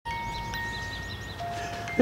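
A music box playing a few clear, ringing notes, one after another, each sustaining.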